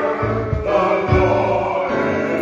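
Gospel song sung by a choir, with instrumental backing and low bass thuds about once a second.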